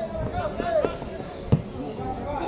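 A football kicked once, a sharp thud about a second and a half in, among players' short shouted calls on the pitch.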